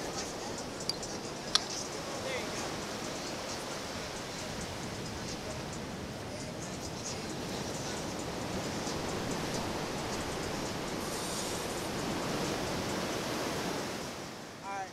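Steady rush of ocean surf breaking on the shore, with two sharp clicks about a second in.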